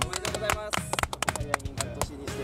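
A group of people clapping their hands together in a quick, uneven patter over background music; the clapping stops at the very end.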